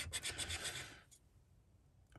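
A coin scraping the silver coating off a scratchcard in rapid short strokes, stopping about a second in.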